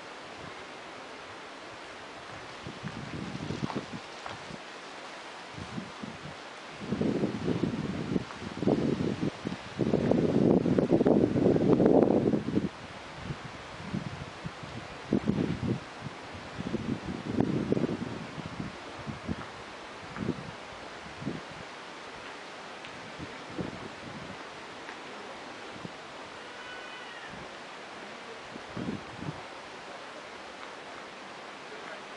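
Outdoor hiss broken by irregular gusts of wind buffeting the microphone. The strongest gust comes about ten seconds in and lasts a couple of seconds.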